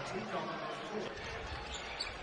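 A basketball being dribbled on a hardwood court, with a steady background of arena crowd noise.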